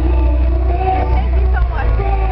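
Live pop music heard from the audience: a woman's voice singing over a deep, steady bass.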